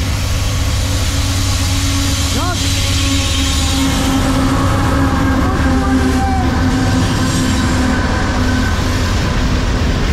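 Two GE AC44CW diesel-electric locomotives of a CSX freight train passing close by under power: a loud, steady engine rumble with a held tone. By the end the tank cars behind them are rolling past.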